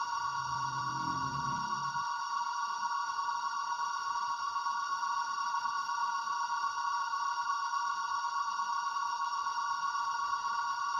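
A steady electronic drone of several held high tones, with a deep low note underneath that stops about two seconds in.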